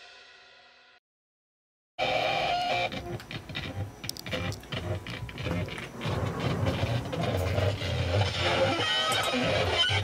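The tail of a drum-backed intro jingle fades out, then about a second of silence. About two seconds in, an electric guitar run through effects pedals starts suddenly, heavily distorted and noisy with a steady low drone and scattered crackles.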